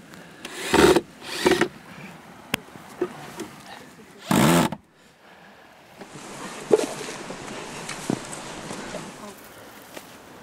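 Cordless drill-driver run in three short bursts, driving screws into plywood nativity figures. Then quieter rustling with a few light knocks as the wooden figures and branches are handled.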